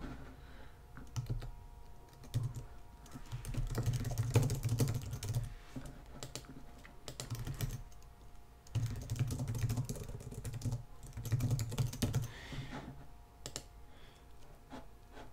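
Typing on a computer keyboard: several quick runs of keystrokes separated by short pauses.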